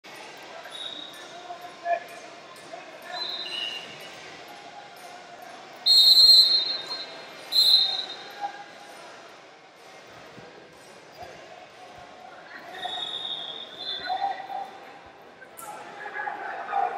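A referee's whistle blown at the start of a wrestling bout, a shrill blast about six seconds in and a short second blast just after. Fainter whistles sound at other moments over the steady murmur of a large gym hall.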